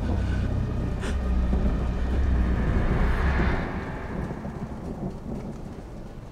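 A long roll of thunder over rain: a deep rumble that swells for about three seconds and then dies away.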